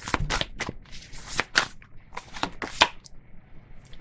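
A deck of tarot cards being shuffled by hand: quick, irregular card flicks and slaps that thin out about three seconds in.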